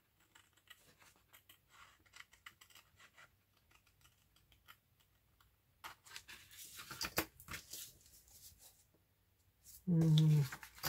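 Scissors snipping through paper in a run of small, quiet cuts, with paper rustling and handling. The sound gets louder and busier from about six seconds in.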